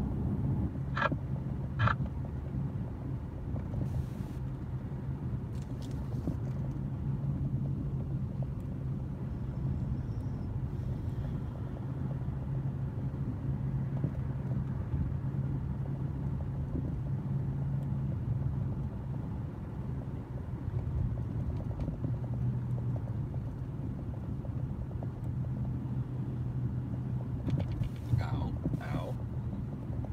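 Car cabin noise while driving: a steady low engine hum and road rumble, with two short, sharp high chirps about a second and two seconds in.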